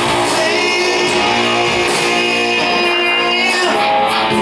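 Live indie rock band playing in a concert hall: electric guitar and drums with voices singing long held notes.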